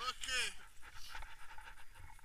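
A man laughing briefly and breathlessly in the first half second, then only faint rustling.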